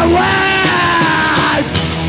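Punk rock band playing live, the singer holding one long shouted note over the band that breaks off about three quarters of the way through, recorded on a bootleg tape.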